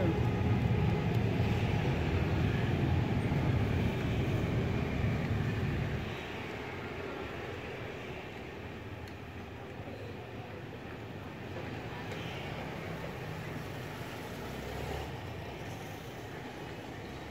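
Steady low rumbling background noise, loud for about the first six seconds, then dropping to a quieter, even hum.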